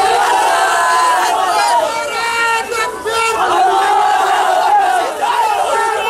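A crowd of people shouting over one another, many raised voices at once, loud and without a break.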